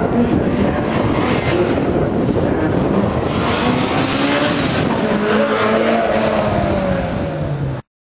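Honda Integra DC2's four-cylinder engine revving up and down as the car is driven hard through a gymkhana cone course, its pitch rising and falling between turns. The sound cuts off suddenly near the end.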